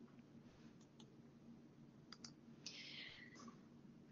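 Near silence: room tone with a few faint clicks about one and two seconds in, and a soft hiss near three seconds.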